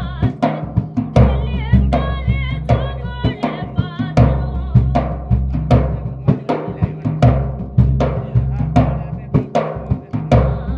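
Large dhol drum beaten in a steady rhythm with deep bass strokes, under a folk singing voice that carries a bhajan melody for the first few seconds.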